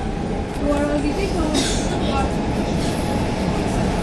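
CAF Boa metro train running, heard from inside the passenger car: a steady low rolling rumble from wheels and running gear, with a brief higher hiss about a second and a half in.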